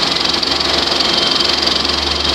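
Film projector running: a steady mechanical whirr from its motor and film-transport mechanism, with a low hum beneath.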